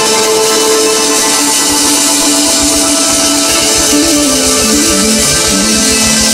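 Live rock band playing an instrumental passage: electric guitar over drums and synthesizer, with a melody line stepping up and down in the second half.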